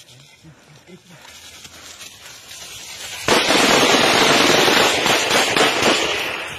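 A sudden, very loud explosion about three seconds in, its blast running on as a dense crackling noise to the end. Low voices are heard before it.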